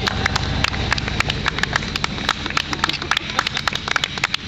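Scattered hand clapping, several sharp irregular claps a second, over a steady low rumble.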